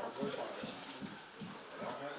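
Faint, muffled talking in a room, broken by a few soft knocks or taps.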